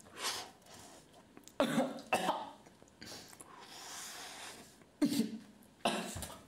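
A man coughing in several sharp fits, with a long breathy sniff in the middle, after snorting a line of pineapple squash powder.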